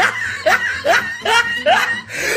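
Snickering laughter: a quick run of short repeated laughs, about two or three a second.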